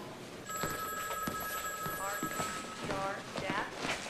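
Hospital corridor ambience: a steady electronic tone that holds from about half a second in to just past two seconds, with footsteps and indistinct background voices.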